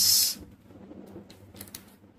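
Small screwdriver turning the screw of a blue screw terminal on an XL4015 buck converter board to clamp a wire: faint, irregular scratchy clicks.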